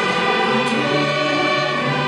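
Student string orchestra of violins, violas, cellos and double basses playing held chords that change every half second or so.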